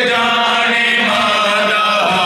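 Male voices chanting a noha (a Shia lament), holding long steady notes.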